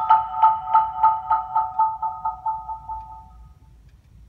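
Marimba played with mallets: the same cluster of high notes struck over and over, about four strokes a second, fading away to nothing about three and a half seconds in.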